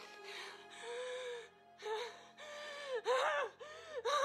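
A woman gasping and letting out wavering, wordless cries in distress, the loudest about three seconds in, over quiet sustained music.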